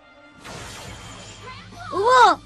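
Cartoon soundtrack: quiet background music, then about half a second in a sudden crash sound effect that leaves a noisy wash, and a loud shouted cry near the end.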